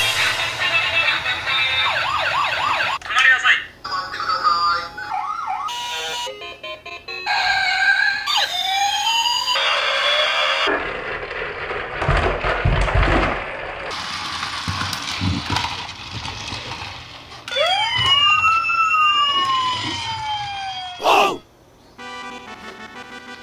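Electronic sound effects from toy police vehicles, in short segments that change abruptly: siren wails rising and falling, with several sirens overlapping in the later seconds. A low rumble runs through the middle.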